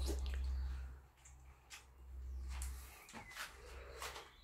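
A man quietly chewing a mouthful of pasta, with a few faint short clicks, over a low steady hum that drops out now and then.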